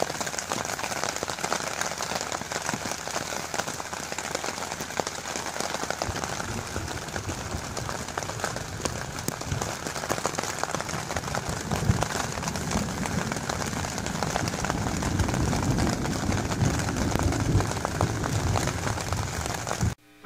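Rain falling steadily on a nylon tent, heard from inside, a dense hiss of fine drop ticks. From about six seconds in, a low rumble joins it.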